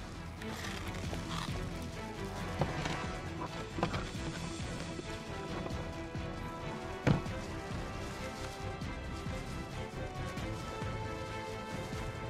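Dramatic background score with sustained tones. Over it come a few scattered knocks of concrete rubble being pried and shifted, the sharpest about seven seconds in.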